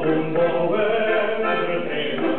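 Diatonic button accordion playing live, with a man's voice singing along.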